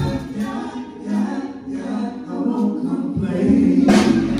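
Live gospel music: group singing over keyboard while the bass guitar and drums drop out, then the full band comes back in near the end with a sharp drum hit.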